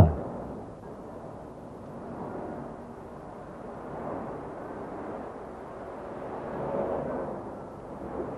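Street traffic: a steady rumble of car engines and tyres that swells a few times as cars pass.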